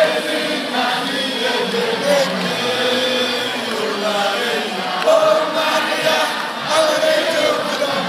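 A large crowd of many voices singing or chanting together, at a steady, fairly loud level without a break.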